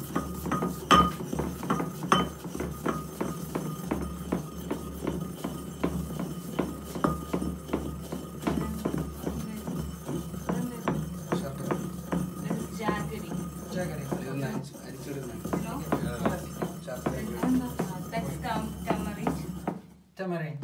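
Ceramic pestle pounding and grinding saindhava rock salt in a ceramic mortar: a fast, uneven run of small knocks and clinks, over a steady low hum.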